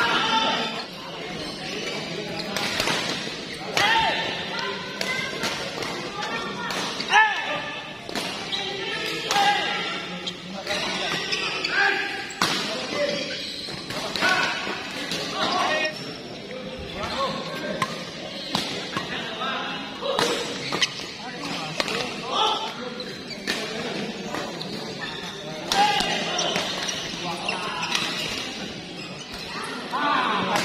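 Badminton doubles rallies: rackets hitting the shuttlecock in sharp, irregular strikes, with players' footwork and shoe squeaks on the court mat.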